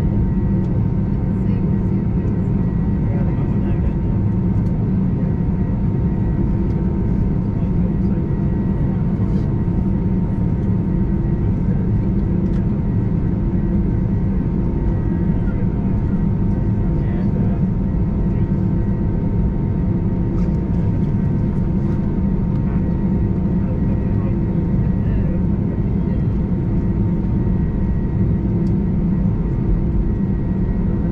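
Cabin noise of an Airbus A320-214 taxiing: a steady low rumble from its CFM56 engines at idle thrust, with a faint steady whine above it.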